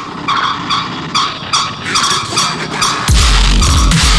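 Dubstep played loud over a festival sound system. The sub-bass cuts out for a short breakdown of repeated high synth stabs, a few a second, then heavy bass crashes back in about three seconds in as the drop returns.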